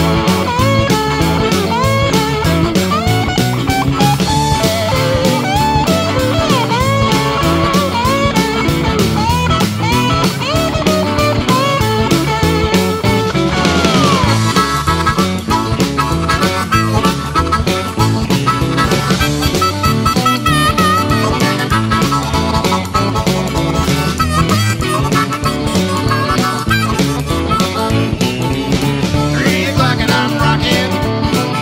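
Rock and roll band playing an instrumental break: a lead line of sliding, bending notes over a steady bass, drums and rhythm guitar, with a long downward slide about fourteen seconds in.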